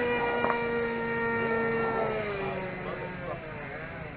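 RC model airplane's motor running with a steady high whine that drops slightly in pitch and fades in the second half.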